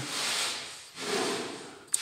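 A hand rubbing against the gears and cast housing of an MTZ tractor gearbox: two soft rubbing strokes, each just under a second, with a small click near the end.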